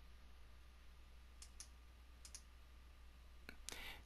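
Faint computer mouse clicks over near silence: a quick pair of clicks about a second and a half in, another pair a little after two seconds, and a single click near the end, followed by a soft breath.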